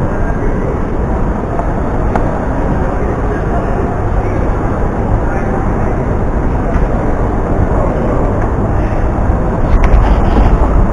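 Steady crowd-and-building ambience of an airport terminal concourse with a heavy low rumble, picked up on a camera carried while walking; a few short clicks near the end.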